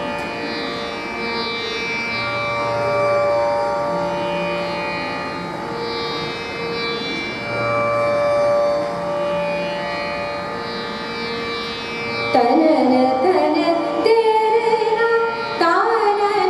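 Hindustani classical accompaniment of slow, sustained melodic notes from harmonium and a bowed string instrument. About twelve seconds in, a woman's voice enters louder, singing a wavering, ornamented line.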